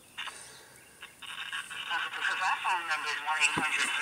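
A call-centre agent's voice coming through a phone's speaker, thin and narrow-band, starting about a second in after a brief near-silent pause.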